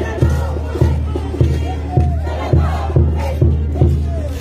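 Parade band music with a bass drum beating steadily, a little under two strokes a second, over a held low note, while dancers and onlookers shout over it.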